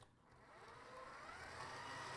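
Tilt-head stand mixer switched on: its motor whir fades in and rises in pitch over about a second as it spins up, then runs steadily.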